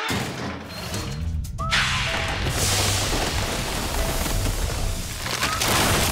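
Cartoon sound effects: a dense, continuous clatter of rapid thuds and crashes over music, the noise of the giant overgrown plants being ripped out and chopped to bits.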